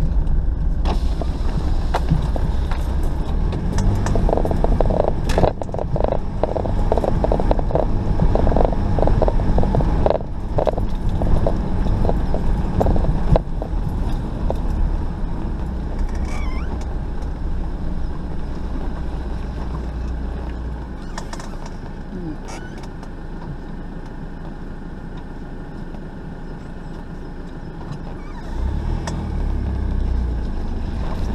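4x4 driving slowly over a rutted, muddy track: a low engine drone with rapid clattering knocks and rattles from the body and suspension through the first half. The drone drops and the rattling eases about two-thirds of the way in, then the engine picks up again near the end.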